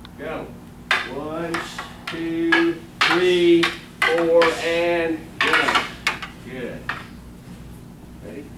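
Wooden bokken practice swords knocking together in partner cut-and-block drills: a series of sharp, irregular clacks. Drawn-out voices sound over them from about one to five seconds in.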